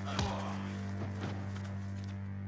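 A low, steady drone from the film's synthesizer score holds one note throughout. A sharp hit lands about a quarter second in, and a few light knocks follow around the one-second mark.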